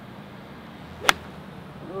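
A golf iron striking a teed-up ball: one sharp, crisp click about a second in.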